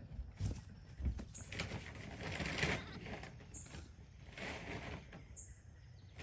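Soft rustling and scuffling with a couple of light thumps early on, and a brief very high peep about every two seconds.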